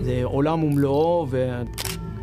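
A single camera shutter click near the end, sharp and short, heard under a man speaking.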